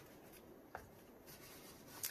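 Near silence: faint rubbing of a paper towel wiping up a drip of resin, with one small tick about three quarters of a second in.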